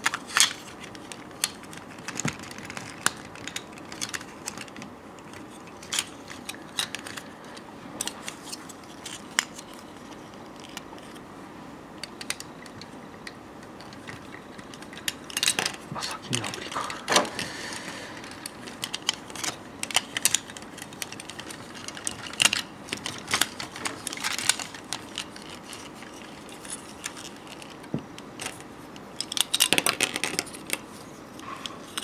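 Plastic parts of a transforming VF-1A Valkyrie figure clicking and knocking as armour pieces are handled and fitted onto its legs. The small clicks are irregular and come throughout, thicker past the middle and again at the very end.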